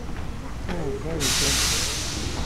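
A burst of steam hissing from an Austerity 0-6-0 saddle tank steam locomotive. It starts a little past halfway and lasts just under a second, with people talking just before it.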